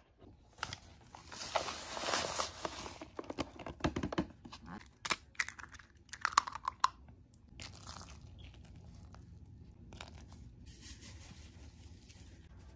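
Baking prep sounds at a mixing bowl: dry cornbread mix rustling and pouring in, a few sharp cracks and taps as an egg is broken into the bowl, then short pours of sugar near the end.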